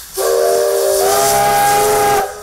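Steam locomotive's whistle blowing one long blast, a chord of several steady notes over a hiss of escaping steam. About a second in, one of the upper notes steps up in pitch.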